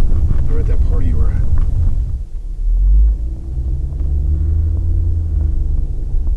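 Car engine and road rumble heard inside the cabin of a moving Mercedes-Benz: a deep, steady drone that swells briefly about three seconds in.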